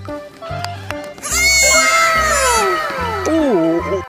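A young goat bleating loudly. A long call starts about a second in and falls steadily in pitch, then a shorter wavering call comes near the end, over background music with a steady beat.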